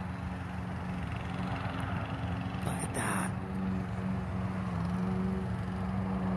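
Steady low hum of a running motor, wavering slightly in pitch, with a brief noisy burst about three seconds in.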